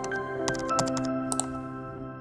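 Computer keyboard typing sound effect: a quick run of key clicks that stops about one and a half seconds in. Under it, background music holds a sustained chord.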